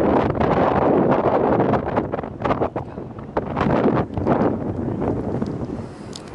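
Wind buffeting the camera microphone: a loud, gusty noise that swells and dips irregularly.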